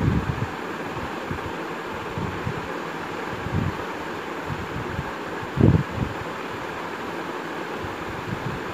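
A steel spoon stirring chicken curry in a stainless steel pressure cooker over a steady hiss, with a few dull knocks, the loudest about six seconds in.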